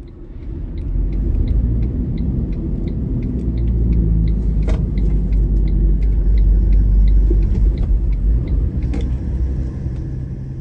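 Cabin road noise of a Toyota Land Cruiser Troop Carrier on the move: a loud, steady low rumble of engine and tyres that builds about a second in, with faint light ticks over it.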